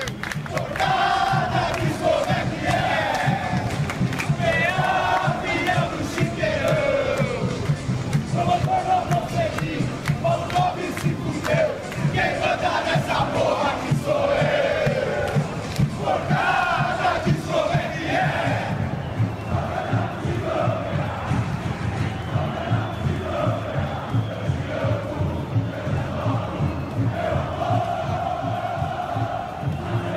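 A football stadium crowd of away supporters chanting in unison: thousands of voices singing the same repeated phrases over a steady low beat.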